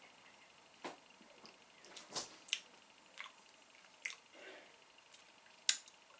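Quiet mouth sounds of a man sipping and tasting beer: a scattering of soft wet clicks, lip smacks and swallows over low room tone.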